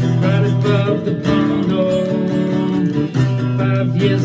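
Acoustic guitar strummed steadily, with a singer's voice carried over it, as a live acoustic folk-pop song.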